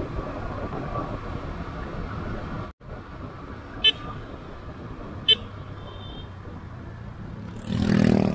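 A 250 cc motorcycle running at road speed with wind on the microphone, cut off abruptly about a third of the way in. Later come two short horn toots, about a second and a half apart, over a quieter road rumble.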